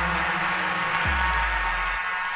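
House music played from a 12-inch vinyl record: a held synth chord over a deep bass note that swoops down in pitch about a second in and then holds.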